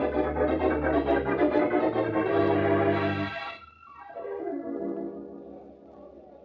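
Organ music bridge: loud sustained chords that break off a little past three seconds in, followed by a softer held chord that fades away.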